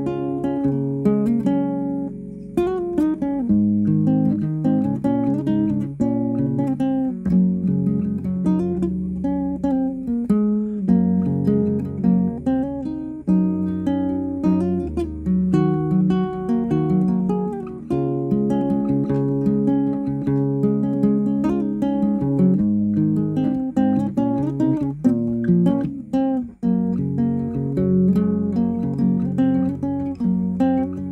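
Nylon-string classical guitar, a Yamaha CG-40, playing an improvised passage of picked notes and chords that runs on without a break.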